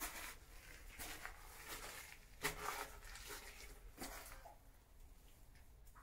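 Footsteps and clothing rustle on a muddy, stony tunnel floor: a few irregular, slow steps, the loudest about two and a half seconds in, quieter over the last second or so.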